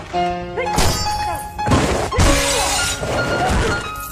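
Film fight sound effects over a music score: several heavy punch and body-impact hits, with a longer crash about two seconds in, all over sustained background music.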